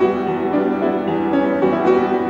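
Grand piano playing a passage of changing notes and chords, each note ringing on under the next.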